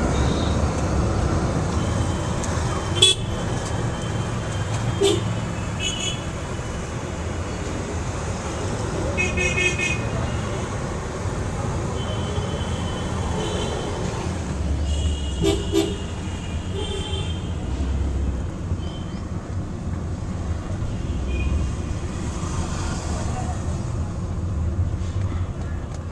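Road traffic with vehicle horns: several short horn toots scattered through, over a steady low vehicle rumble.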